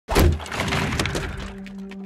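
Opening sting of a logo intro: a sudden loud crack with a crackling tail that fades over about a second and a half, as held low notes of the intro music come in beneath it.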